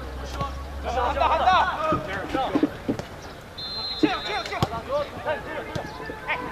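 Soccer players shouting short calls to each other across the pitch during open play, in bursts of several voices. About halfway through a thin, steady high tone sounds briefly.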